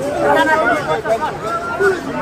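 A packed crowd of many voices talking over one another at once, no single voice standing out.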